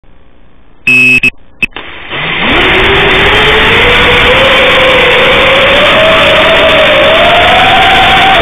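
A brief electronic beep about a second in. Then a small FPV quadcopter's electric motors spin up about two seconds in: a loud whine that rises quickly at first, then keeps climbing slowly in pitch as the throttle goes up and the drone lifts off.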